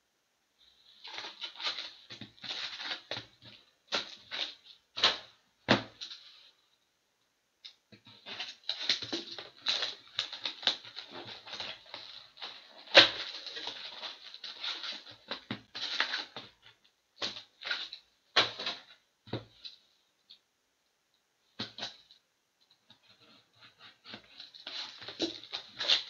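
Foil trading-card packs crinkling and rustling in hands as they are taken from a cardboard box, with light cardboard clicks. It comes in irregular bursts with a couple of short pauses.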